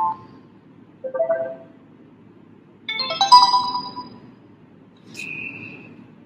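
Sony Xperia M's built-in notification tones previewing one after another through the phone's speaker, each short and cut off as the next is picked. First a brief low blip about a second in, then a brighter multi-note chime around three seconds in, then a short steady high tone near the end.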